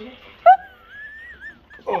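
A dog gives a sharp yelp about half a second in, then a high, wavering whine lasting about a second.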